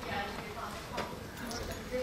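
Faint, distant speech of someone off the microphone, most likely an audience member putting a question or comment. About a second in there is a single sharp knock as a plastic water bottle is set down on the wooden lectern.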